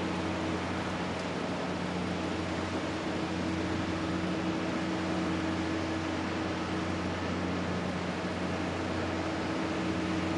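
Steady machine hum with a few fixed low tones over an even hiss, unchanging throughout.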